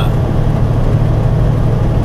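Steady low drone of a truck's engine heard from inside the cab, running at an even level throughout.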